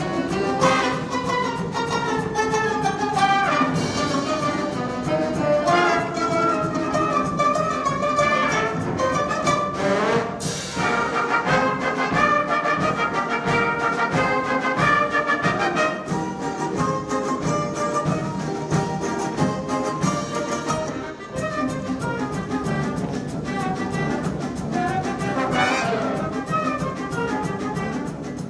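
A Russian folk orchestra of domras, balalaikas and bayan playing live together with a brass band of tuba, trumpets and clarinets: one piece of full ensemble music.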